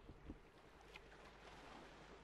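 Near silence: faint background hiss with a couple of soft low thumps just after the start.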